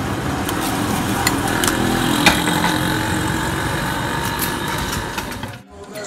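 A motorcycle engine running steadily close by, with a few light clinks of serving dishes. The sound cuts off shortly before the end.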